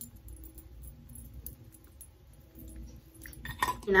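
Faint room hum with a few soft clicks and light clinks of small objects being handled, a little busier near the end.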